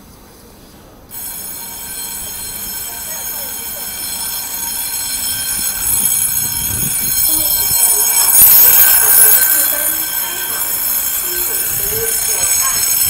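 A Taiwan Railway Fu-Hsing passenger train pulling into an underground station. The noise starts suddenly about a second in with steady high-pitched tones, then builds to a loud rush around eight seconds in as the carriages pass, and eases off a little toward the end.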